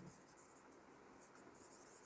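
Faint scratching of a marker writing on a whiteboard, in short broken strokes.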